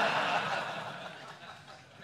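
Laughter that dies away over about a second and a half.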